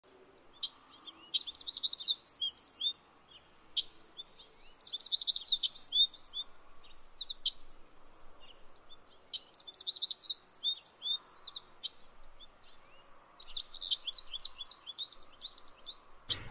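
Songbirds singing: four bursts of rapid, high chirps, each a couple of seconds long, with short pauses between them.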